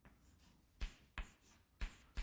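Faint writing on a board: three short, sharp taps and strokes of a writing implement in the second half, as the lecturer marks a point on a hand-drawn graph.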